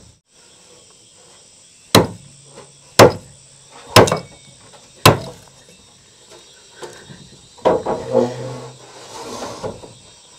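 A hammer nailing corrugated metal roofing sheets: four sharp strikes about a second apart, then quieter handling sounds and a faint voice. Insects buzz steadily in the background.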